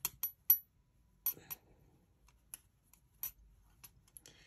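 Small sharp clicks from a size 3 metal crochet hook being worked through yarn stitches, about seven at irregular spacing, three in quick succession at the start and the loudest about half a second in.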